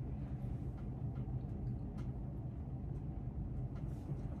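Steady low background hum, with a few faint ticks.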